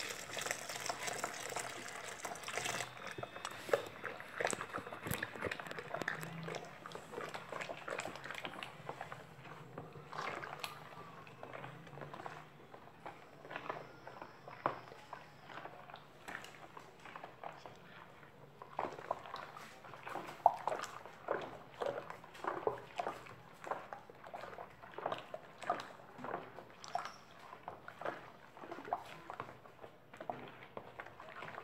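Thick liquid soap poured from a plastic bowl into a plastic basin for the first few seconds, then the foamy mixture stirred with a plastic spoon: repeated sloshing and small clicks of the spoon, busiest in the second half.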